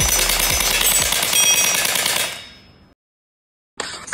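LH MP9 electric gel blaster firing a rapid full-auto burst of closely spaced shots, fading out after about two and a half seconds, followed by a short silence.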